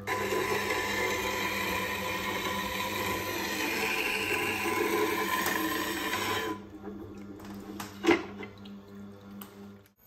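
Woodturning gouge ground against the wheel of a slow-speed bench sharpener: a steady gritty grinding over the machine's low motor hum. The grinding stops about six and a half seconds in, leaving the hum and a few light clicks.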